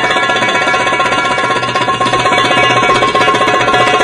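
Lively live band music with a fast, even strummed pulse from string instruments.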